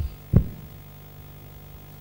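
Two low thumps from a microphone being handled as it is passed to a questioner, the second louder, both in the first half second. A steady low hum follows.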